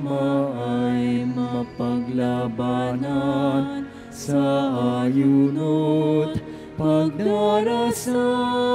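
A hymn sung in a church, in held notes that step from pitch to pitch, phrase by phrase, with short breaths between the phrases.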